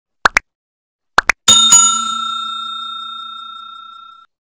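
Subscribe-button animation sound effects: two pairs of quick rising pops, then a notification-bell ding struck twice in quick succession that rings out and fades over about two and a half seconds.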